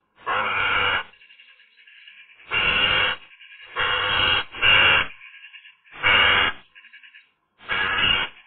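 Eurasian magpie giving harsh calls close to the microphone: six loud calls, each about half a second long and roughly a second apart, with fainter chatter between them.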